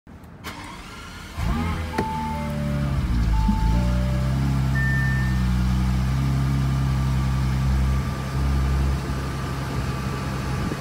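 Bentley Continental GT engine starting: it catches about a second and a half in with a brief flare of revs, then settles to a steady idle. A few short electronic beeps sound between about two and five seconds in.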